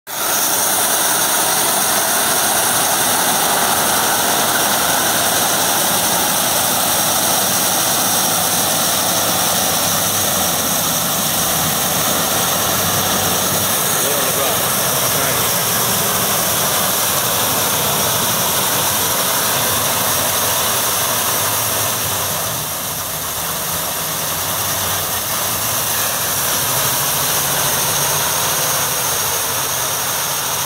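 Tractor engine under load driving a tractor-mounted sugarcane harvester attachment as it cuts cane: a loud, steady machine noise with a lot of high hiss, easing a little about two-thirds of the way through.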